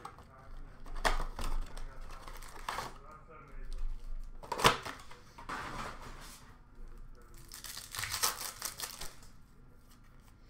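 A hockey card blaster box and its packs being opened by hand: bursts of crinkling and tearing packaging, with a sharp snap about halfway through and a thicker run of rustling near the end.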